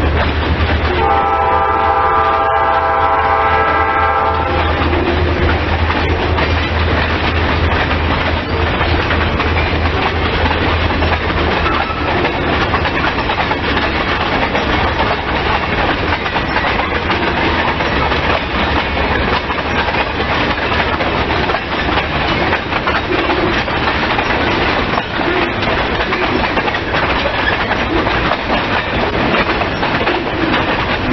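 Freight train's tank cars and boxcar rolling past with a steady wheel-on-rail noise. About a second in, a locomotive horn sounds one steady chord for about three seconds.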